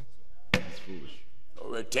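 A single sharp thump about half a second in, then a man's voice starting again near the end.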